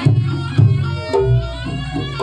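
Live traditional percussion-led music: hand-drum strokes fall about twice a second under a reedy wind instrument that holds long notes.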